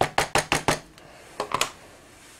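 A rubber stamp mounted on a clear acrylic block tapped repeatedly against an ink pad to ink it: five quick hard clicks, about six a second, then a pause and two more clicks.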